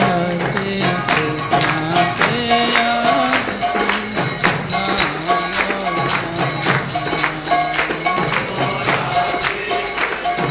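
Devotional kirtan music: hand cymbals (kartals) ringing in a quick steady beat over a melody of held notes that step from pitch to pitch.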